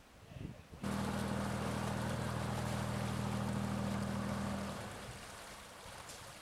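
A steady low engine hum with a rushing noise over it, starting abruptly about a second in; near the end the hum cuts off and the rushing fades away.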